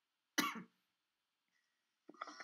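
A person coughs once, briefly, about half a second in.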